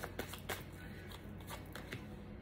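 A deck of tarot cards being shuffled by hand: faint card rustling with a few soft clicks in the first half second.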